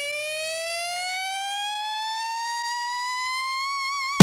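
A siren-like electronic tone with several overtones, winding slowly upward by about an octave as the build-up in the intro of a hip hop track.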